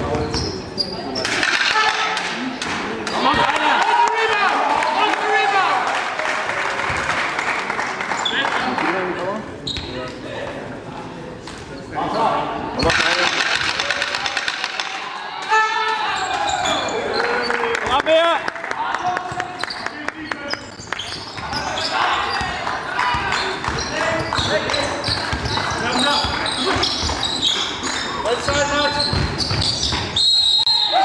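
A basketball bouncing on the court during play, amid voices of players and spectators, echoing in a large sports hall.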